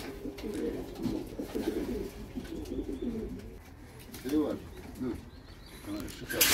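Domestic pigeons cooing: a low, warbling coo through the first half, then another call about four and a half seconds in.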